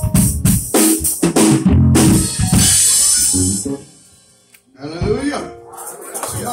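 Drum kit playing a run of quick hits on snare and bass drum, ending in a cymbal crash that rings for about a second and then dies away. About five seconds in, a man's voice starts over the room.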